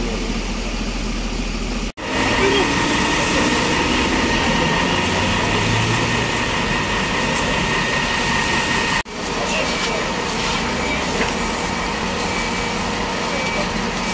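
Fire engines' diesel engines idling amid roadside traffic noise, with people talking, in three clips joined by abrupt cuts about two seconds in and about nine seconds in. The middle clip carries a steady high tone over the noise.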